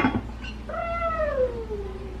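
Domestic cat meowing: one long meow that slides down in pitch, starting a little under a second in. A brief clack at the very start.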